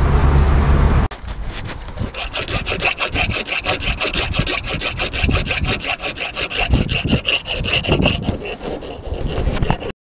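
Car engine and road noise inside the cabin, cut off suddenly about a second in. Then rapid back-and-forth strokes of a hand tool working the steel seat bracket, about five a second, with a ringing metallic scrape.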